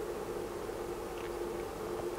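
Faint steady hum: one constant mid-pitched tone over quiet background noise.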